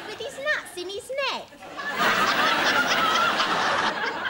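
Studio audience laughing at a joke. The laughter thins for a moment, with a few single laughs standing out, then swells loud again about two seconds in.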